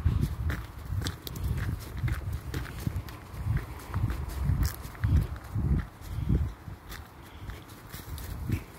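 Footsteps on a dirt path strewn with dry leaves and grit, about two steps a second: each step a dull thud with a light crunch.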